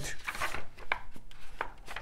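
A paper page of a picture book being turned by hand: rustling, with several short ticks.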